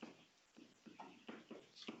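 Near silence with a few faint, short stylus strokes of handwriting on a tablet screen.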